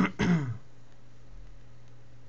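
A man clearing his throat in two quick rasping bursts in the first half second, followed by a steady low hum.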